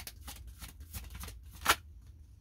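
A deck of oracle cards being shuffled by hand: a quick run of soft card flicks, with one sharper, louder slap about a second and a half in.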